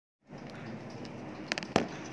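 Light, sharp clicks of long acrylic nails and a nail brush tapping together during acrylic nail work: a quick run of three small clicks about one and a half seconds in, then one louder click, over steady room hiss.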